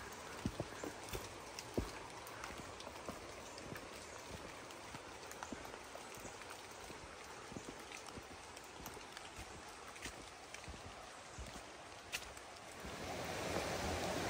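Light rain dripping and scattered footsteps on a wet trail and wooden footbridge. Near the end the rushing of a creek swells as it comes close.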